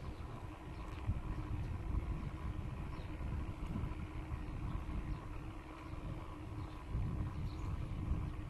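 Wind rumble on the microphone and road noise from a small vehicle riding along a paved path, over a faint steady hum.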